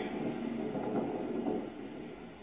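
Muffled, steady noise from police bodycam footage playing through a television's speaker, with no clear words, fading slightly near the end.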